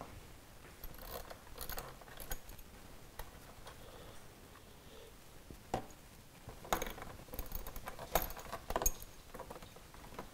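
Scattered light clicks and clinks of hand tools and small screws being handled, with a few sharper ones between about six and nine seconds in.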